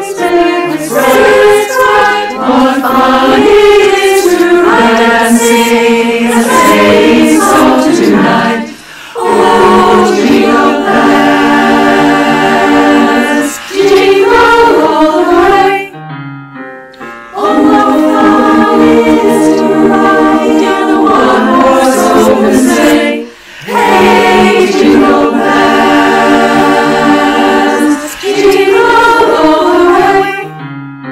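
Women's choir singing in harmony as a virtual multitrack choir, in phrases of long held chords broken by three short breaks.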